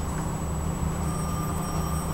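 Steady low hum and rumble of background noise, with a faint thin tone coming in about halfway through.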